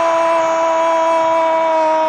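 A football commentator's long, sustained shout held on one steady high note over crowd noise, the drawn-out call of a goal.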